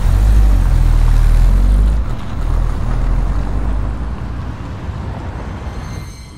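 Low rumble of a moving car's road noise, loudest for the first two seconds and then fading gradually.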